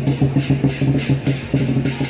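Lion dance percussion: a large drum beaten in a fast, even rhythm of about five strokes a second, with cymbals crashing along with it.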